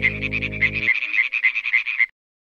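European tree frogs (Hyla arborea) calling: a fast, even run of loud, sharp pulses. A soft music bed underneath stops about halfway through.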